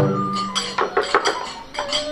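Kagura festival music: small hand cymbals clanging in quick metallic strokes over a bamboo transverse flute (fue), with a taiko drum stroke still ringing at the start.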